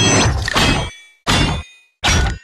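Two metallic clang sound effects. The first is a hard hit that rings for most of a second. The second is a shorter hit about a second and a quarter in.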